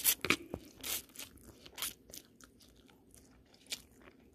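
A person chewing a mouthful of rice noodles and shrimp close to the microphone: irregular short mouth smacks and clicks, most of them in the first two seconds, thinning out after, with one more near the end.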